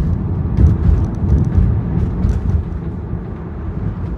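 Steady low rumble of road and tyre noise inside a moving car's cabin, fluctuating slightly as it drives along.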